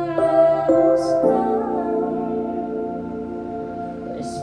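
Slow, soft music: a woman's voice holding a long sung note over sustained accompaniment.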